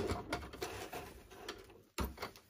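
Handling at a stopped Janome sewing machine after a seam: one sharp click right at the start, then faint small clicks and rustling of fabric being drawn out from under the presser foot, fading out.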